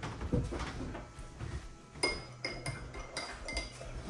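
Drinking glasses clinking and being set down on a wooden table, a series of light knocks, several with a brief glassy ring, while milk is poured and served.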